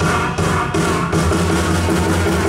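Live blues band playing an instrumental passage: electric guitar, electric bass guitar and drum kit.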